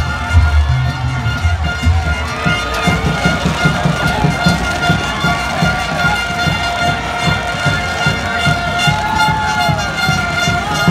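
Supporters' band in the stands playing: drums beating a quick rhythm of about four beats a second under long held horn notes.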